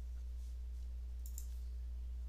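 Steady low electrical hum on the recording, with a couple of faint clicks from computer keys or a mouse a little past the middle.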